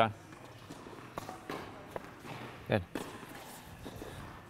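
Tennis balls being struck with rackets during volley practice: a few sharp pops, about a second apart.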